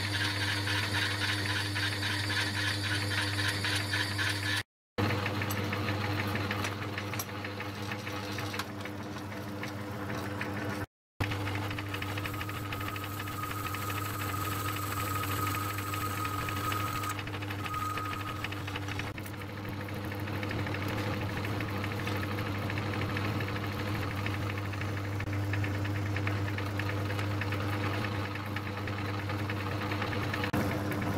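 Metal lathe running steadily with its chuck spinning, while a hole is machined through clamped connecting-rod brasses. The cutting noise is strongest in the first few seconds, and a faint thin whine comes in for a few seconds near the middle. The sound breaks off briefly twice.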